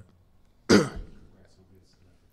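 A person clearing their throat once, short and loud, about three-quarters of a second in, with the room otherwise quiet.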